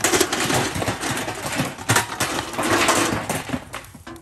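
Fire crackling in a steel burn barrel while material is tipped in from a metal bucket: a dense, continuous run of sharp clicks and small knocks that fades near the end.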